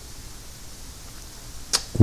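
Steady low hiss of an open microphone in a pause between a man's spoken words, with a brief intake of breath near the end.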